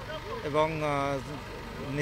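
A man's voice holding one drawn-out vowel, quieter than the speech around it, over steady outdoor background noise.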